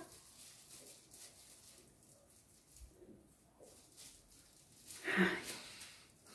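Faint sniffing and breathing close to the skin as perfume sprayed on the forearm is smelled, in a mostly quiet room. A short voiced murmur comes about five seconds in.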